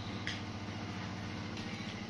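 Steady low hum with a light hiss under it, holding at one pitch and level throughout.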